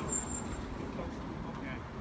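Outdoor city background noise: a low, steady rumble with faint voices of people nearby.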